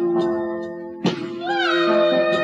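Live band music: a sustained chord with a sharp plucked guitar note about a second in, and a bending, gliding melody line entering about midway.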